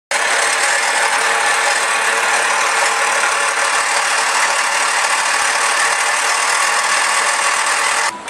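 Power equipment running steadily, a loud even mechanical noise that cuts off abruptly near the end.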